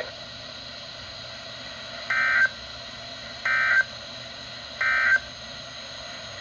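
Weather radio speaker sounding the Emergency Alert System end-of-message data bursts: three short, identical buzzy digital chirps about a second and a half apart, over steady radio hiss. They mark the end of the severe thunderstorm warning broadcast.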